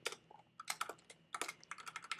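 Typing on a computer keyboard: a quick, uneven run of soft key clicks as code is entered.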